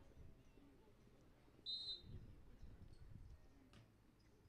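A referee's whistle: one short, high blast under a second and a half in, the signal for the serve. The rest is near silence.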